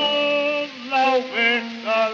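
A voice singing on a 1907 acoustic-era 78 rpm disc of a tango sung as a duet with piano: one held note, then a few short notes that slide up and down.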